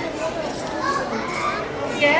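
Speech: several voices talking over one another in a lively babble.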